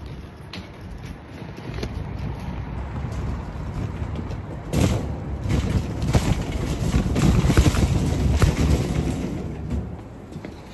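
Metal shopping trolley being pushed along, its wheels rumbling over the ground and its wire basket rattling, heard from a phone lying in the trolley. The rattle gets louder about halfway in and eases off near the end.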